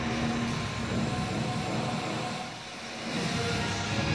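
Background rock music, dipping briefly in loudness about two and a half seconds in.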